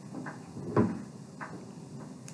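Dry-erase marker writing on a whiteboard: a few short strokes, and one louder knock a little under a second in.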